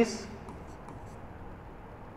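Faint scratches and ticks of a stylus writing numerals on a touchscreen whiteboard, a few short ticks about half a second to a second in, over a steady low hiss.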